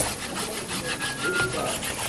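Scraping and rubbing from a cook working food by hand at a kitchen bench, with one short spoken word at the start.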